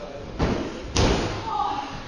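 Two heavy thuds on a pro wrestling ring's canvas, about half a second apart, the second sharper and louder: a wrestler jumping and stomping down in the ring.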